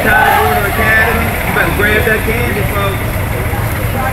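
Indistinct voices of people talking along the street, over a steady low rumble.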